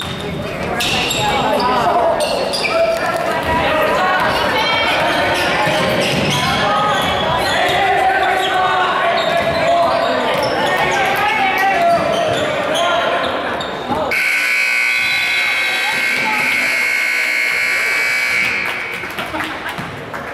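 Basketball game in a large gym: players and spectators calling out, with the ball bouncing on the hardwood. About fourteen seconds in, a long steady buzzer sounds for about five seconds.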